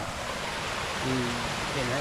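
Steady rushing of a small forest stream spilling down a low rocky cascade.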